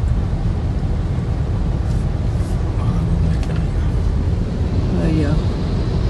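Steady low rumble of a car driving, heard from inside the cabin, with faint voices now and then.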